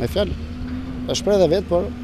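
A man speaking in Albanian over a steady low engine hum from an idling motor nearby.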